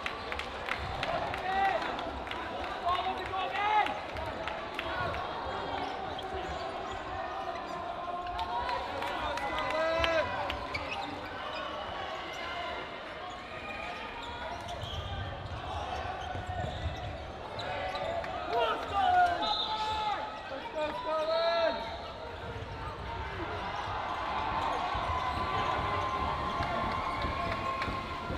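Busy echoing sports-hall sound of dodgeball play: balls thudding and bouncing on the hardwood court, short sneaker squeaks, and players' shouts and voices from around the hall. The loudest moments come about 3 to 4 seconds in, around 10 seconds, and around 19 to 21 seconds.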